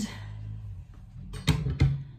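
Two sharp knocks about a third of a second apart, about one and a half seconds in, over a low hum.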